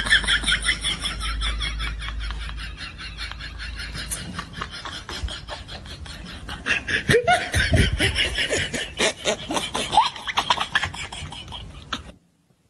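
People laughing in rapid, rhythmic fits, with lower-pitched laughs joining about seven seconds in; the laughter cuts off suddenly at the end.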